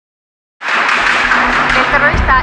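Silence, then about half a second in a dense wash of noise with voices and faint music cuts in suddenly and stays loud.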